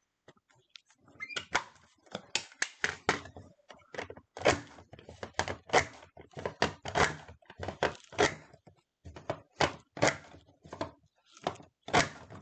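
A Creative Memories decorative paper trimmer cutting a decorative edge into patterned cardstock. Its cutting cartridge is worked along the rail, giving a run of irregular plastic clicks and clunks, about two or three a second.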